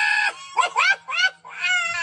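A run of high-pitched vocal calls: one held call, then several short rising calls, then a longer wavering one near the end.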